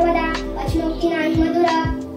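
A girl chanting a Marathi devotional stotra in a sing-song melody, over background devotional music with a steady drone and a few low drum strokes.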